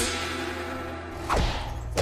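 Edited-in cartoon fight sound effects for a kick: a sharp whip-like hit at the start that rings away, then a swish about a second and a half in, over a held low music note.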